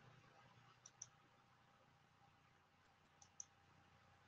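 Two quick double clicks of a computer mouse button, one about a second in and one near the end, over near silence.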